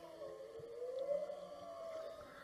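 Humpback whale song, faint, heard underwater: one long call that slowly rises in pitch and then eases back down.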